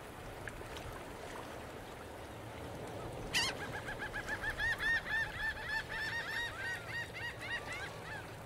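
Soft water and wind ambience. About three seconds in, a bird starts calling in a fast run of short, arched notes, several a second, which carries on until near the end.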